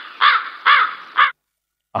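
Recorded crow-cawing sound effect played from the V8 live sound card's 'Embarrass' button, the gag sound for an awkward moment: short caws about half a second apart, stopping about a second and a half in.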